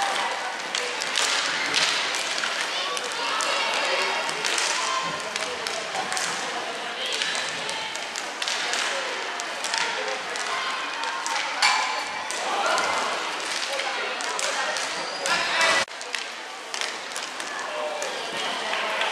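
Inline hockey play: scattered sharp clacks of sticks striking the puck and the rink floor, over continuous shouting voices of players and spectators.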